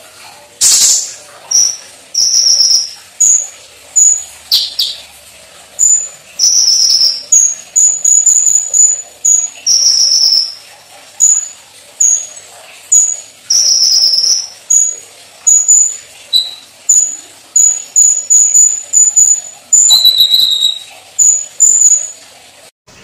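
A caged kolibri ninja sunbird singing loudly: a steady run of short, high whistled notes, roughly two a second, broken by a few longer trilled phrases.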